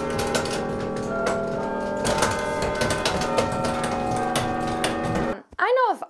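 Tower chime bells ringing a tune, many tones struck one after another and ringing on over each other, with the clatter of the wooden levers and wire linkage of the chime stand as the notes are played. The music cuts off suddenly near the end.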